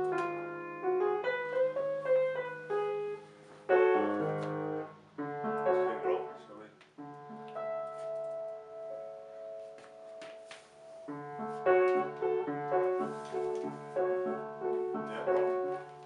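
Upright acoustic piano played without amplification: slow chords and held notes, with short breaks between phrases.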